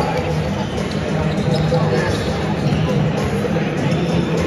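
Several basketballs bouncing on a hardwood court in an irregular patter of thumps as a team warms up, echoing in a large arena over a background of voices.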